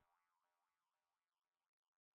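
Near silence: a scene break with no audible sound.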